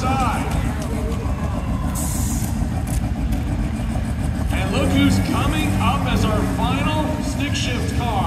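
Drag race car engine running with a deep, rapidly pulsing rumble, with a brief hiss about two seconds in. Voices talk over it through the second half.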